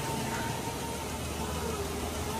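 Steady street background: a low engine-like hum under an even wash of noise, with a faint thin high tone held through and no sudden events.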